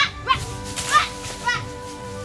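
A child's voice giving short, high calls that rise and fall, about two a second, over background music with long held notes. The calls stop just past halfway, leaving only the music.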